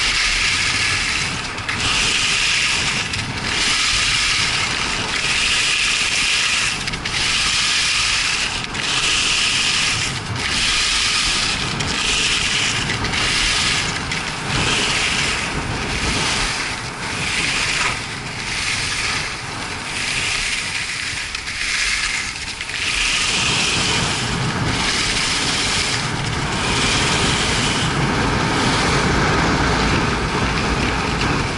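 Skis scraping and carving over packed snow on a downhill run, a hissing scrape that swells with each turn and dips between them, about every one and a half seconds, over a low rumble.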